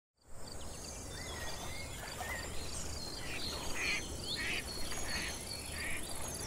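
Outdoor nature ambience: birds calling and chirping over a high, evenly repeating insect-like chirp and a low background rumble, fading in at the start.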